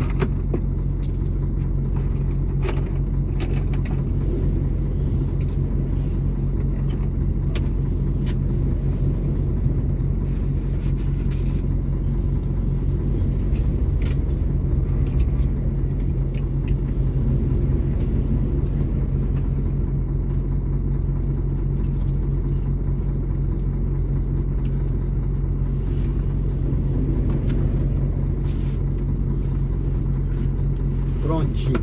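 Stationary truck's diesel engine idling steadily with a constant low hum, heard from the cab, as other heavy trucks pass on the road alongside. Scattered light clicks and knocks come from the cab.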